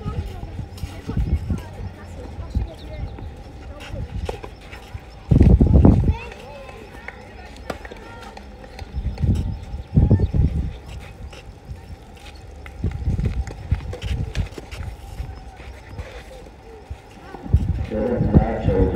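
Outdoor tennis-court ambience: wind buffeting the microphone in several low gusts, with scattered short knocks from balls and footsteps on the clay court.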